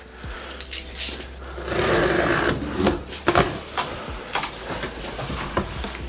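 Cardboard packaging boxes being handled: cardboard sliding and scraping against cardboard, with a longer, louder scrape about two seconds in, then a few short knocks and taps.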